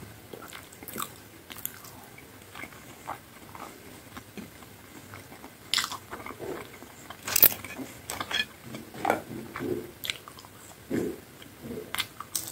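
Close-miked eating of fries and pizza: a string of crisp bites and chewing, with sharp crunches about six, seven and a half, nine and eleven seconds in, the loudest near seven and a half seconds, and softer wet chewing between.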